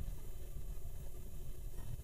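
Quiet pause with only a faint, steady low rumble of room tone; no distinct sound event.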